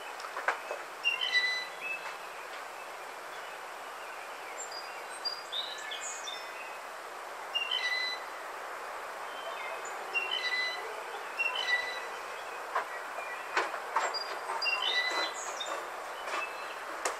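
Blue jay giving its squeaky-gate or rusty pump-handle call: bursts of short, high, squeaky notes repeated every few seconds, with sharp clicks between them.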